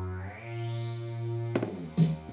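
Korg Electribe MX groovebox playing a techno pattern: a sustained, distorted synth note whose filter opens, brightening over the first second and a half. Sharp drum-machine hits come in near the end.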